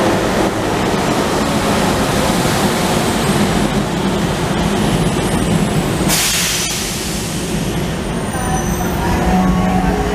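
Rubber-tyred Metromover people-mover train running into the station and slowing to a stop, with a short hiss about six seconds in.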